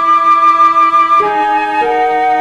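A chamber ensemble of flute, harp, viola and cello playing, with the flute holding long notes over the other instruments. The melody moves to new notes about a second in and again near the end.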